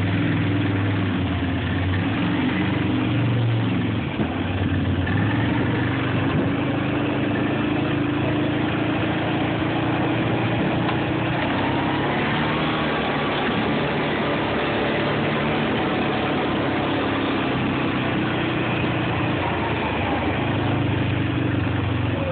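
Quad (ATV) engine running while it is ridden along a dirt trail, steady, with small rises and falls in pitch as the throttle changes.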